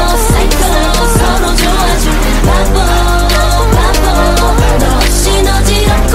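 A K-pop dance track playing loudly, with a steady beat and deep bass notes that drop in pitch every second or so.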